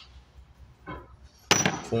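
A single sharp metallic clink about one and a half seconds in, with a brief ring. It is a steel piston from a hydraulic traction motor being set down among other pistons and bolts in a metal parts tray.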